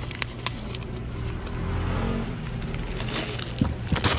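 Groceries handled and packed into a cardboard box by hand: light clicks and rustling, then a plastic-wrapped snack bag crinkling and items knocking into the box near the end. A low rumble swells and fades about halfway through.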